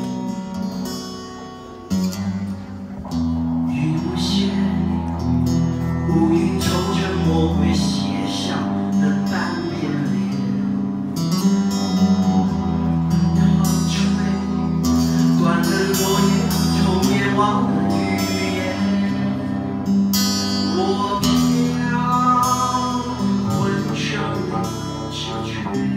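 An acoustic guitar strumming chords while a bowed cello plays long held low notes beneath it. It is quieter for the first two seconds, then the full strumming comes back in.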